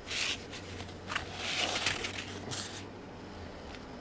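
Trading cards being handled and stood up on a tabletop: a few short rustles and scrapes of card against card and table.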